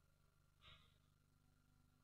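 Near silence, broken by one short, faint breath into the microphone a little over half a second in.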